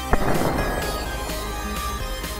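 A short length of solder exploding as a high-voltage capacitor bank is shorted across it: a sharp bang just after the start, then a spray of crackle that fades over about half a second. Electronic background music plays throughout.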